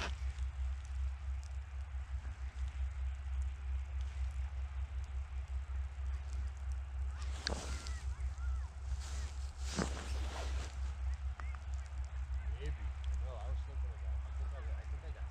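Steady low rumble of wind buffeting the microphone on open ice, with two brief swells of noise about halfway through.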